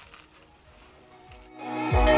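Faint crackle of a black peel-off face mask being pulled away from the skin, then background music swells in about a second and a half in, with a heavy beat starting at the very end.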